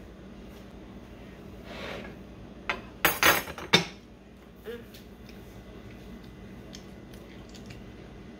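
A butter knife clattering against a dish: a quick cluster of sharp clinks about three seconds in, with quiet kitchen room tone around it.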